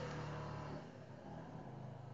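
A low, steady mechanical hum in the background that drops away about a second in, leaving a fainter hum.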